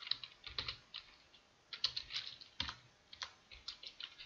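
Computer keyboard typing: short runs of quick keystrokes with brief pauses between them.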